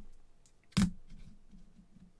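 One short, sharp tap about a second in: a trading card being set down on the tabletop. Otherwise faint room noise.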